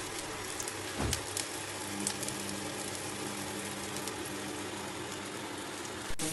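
Chicken kebab sizzling in shallow hot oil in a non-stick frying pan: a steady frying hiss with small crackles, and a low thump about a second in.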